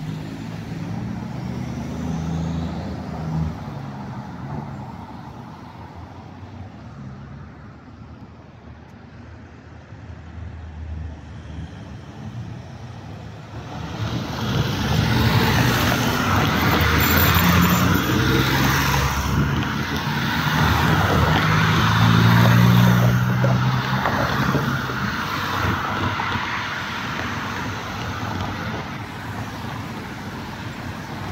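Downtown street traffic: vehicles driving past with a low engine drone. It grows louder about halfway through as heavier traffic passes close by, then eases off near the end.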